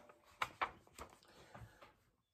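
Faint handling sounds of a picture book's paper page being turned: a few short, soft rustles and light ticks spread through the two seconds.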